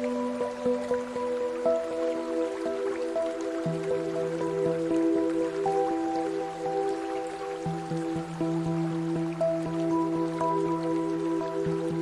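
Slow, calm ambient music of long held notes that shift every few seconds, layered with a bed of small water drips ticking irregularly.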